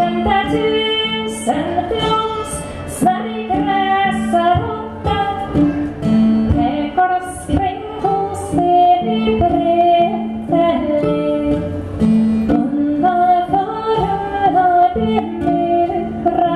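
Live folk music: a woman singing a slow melody over a steady held drone and plucked string accompaniment, from a keyed string instrument and a bouzouki-style long-necked plucked instrument.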